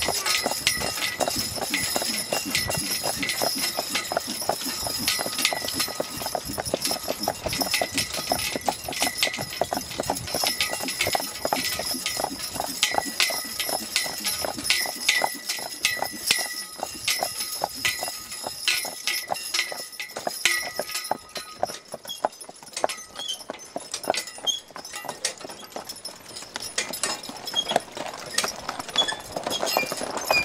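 Hoofbeats of a team of two Percheron draft horses pulling along a paved road, a quick, steady clip-clop. About two-thirds of the way through, the hoofbeats turn quieter and sparser.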